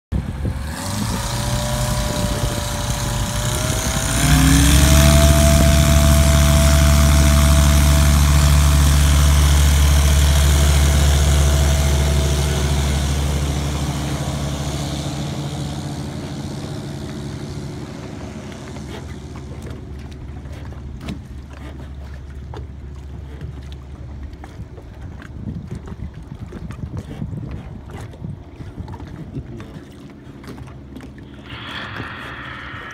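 Single-engine float plane's engine and propeller rising in pitch over the first few seconds, then opening to full takeoff power about four seconds in. It runs loud and steady through the takeoff run, then fades steadily as the plane moves away and climbs out.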